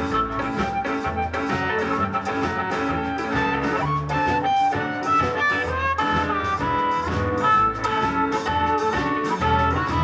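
Live blues band playing: an amplified harmonica, cupped against a handheld microphone, plays a lead with bending notes over a steady drum beat and upright bass.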